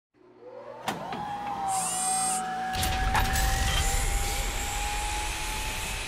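Title-sequence sound effect: a whine rises in the first second and then holds as a steady high tone, with a sharp click just before a second in. A heavy low rumble joins it about three seconds in.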